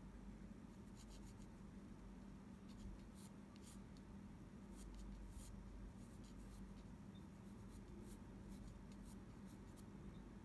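Faint scratching of a graphite pencil sketching on Arches watercolour paper, in many short, irregular strokes, over a low steady hum.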